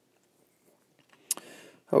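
Near silence for about a second, then a single sharp mouth click and a short intake of breath just before a man starts speaking.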